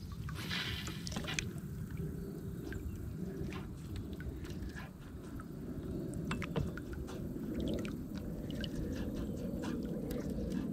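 Small hooked bass being reeled in to the side of a kayak: water splashing and dripping, with scattered light clicks and a steady low rumble underneath. A short burst of splashy noise comes about half a second in.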